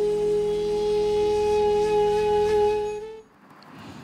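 Intro music: a flute holding one long note over a low steady drone. The music stops about three seconds in, leaving faint room tone.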